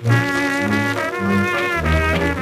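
A 1920s dance orchestra plays an instrumental fox trot passage, heard from an electrically recorded Victor Orthophonic 78 rpm record. Brass holds chords over bass notes that step about twice a second, with a new phrase starting right at the outset.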